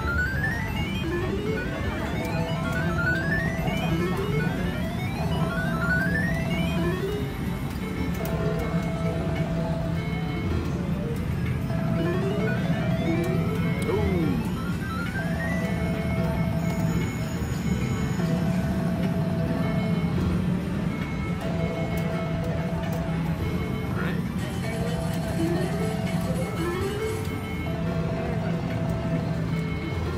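Cleopatra Keno video keno machine during its free-play bonus: a run of short rising electronic chirps as the numbers are drawn, over a looping bonus tune of short held notes repeating about once a second.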